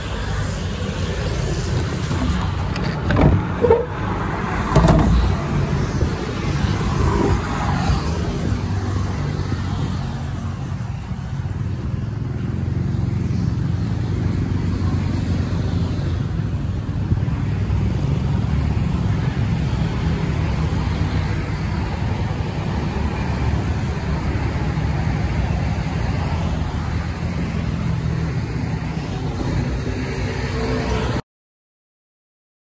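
Kubota L1-33 tractor's diesel engine idling steadily, with a few knocks about three to five seconds in.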